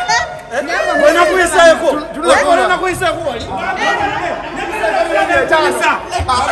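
Lively chatter: several men's voices talking over one another.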